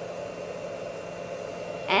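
Steady low machine hum: an even drone with a faint steady tone underneath, unchanging throughout.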